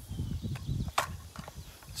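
Low, uneven wind rumble on the microphone, with a single light click about a second in from the rifle being handled.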